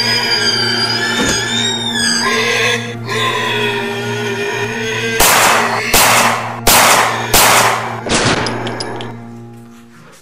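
Horror film score: a steady low drone under high wavering tones, then four or five heavy hits about a second apart in the middle, each ringing out, before the music fades away near the end.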